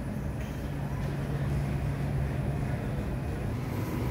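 Supermarket background noise: a steady low hum with a rumble underneath, fading slightly near the end.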